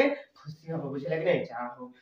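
A man speaking: lecture talk in a mix of Odia and English, with no other sound standing out.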